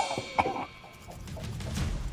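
A man gagging and retching into a bucket, set off by brushing his teeth with mayonnaise: a few short, sharp retches about half a second in, then a quieter lull.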